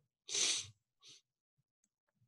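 A short, breathy noise from a man, about half a second long and starting about a quarter second in, like a stifled sneeze or a sharp breath through the nose.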